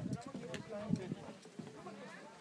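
Faint, indistinct talk from people nearby, with a few light clicks.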